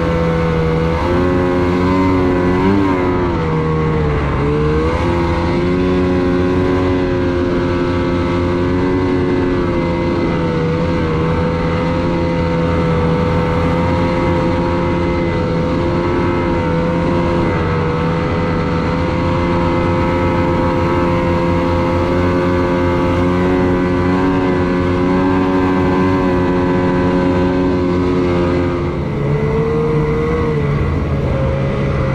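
Snowmobile engine running at high, steady revs under load through deep powder, with a couple of brief throttle lifts and pickups a few seconds in and another near the end.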